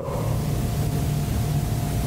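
Steady loud hiss with a low drone and a faint high whine under it, cutting in and stopping abruptly.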